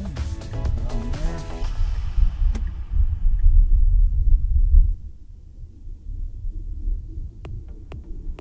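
Electronic background music: melodic notes fade out in the first two seconds over a heavy bass line, which drops away about five seconds in, and a run of sharp ticking beats begins near the end.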